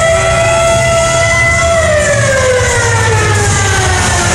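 Arena goal horn blowing one long siren-like tone, held steady and then sliding slowly down in pitch as it winds down, celebrating a home-team goal.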